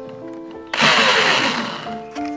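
Corded electric drill running in one short burst of about a second, driving a washer-headed screw into a flat sheet, over background music.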